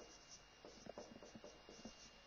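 Marker pen writing on a whiteboard: a faint string of short, irregular strokes.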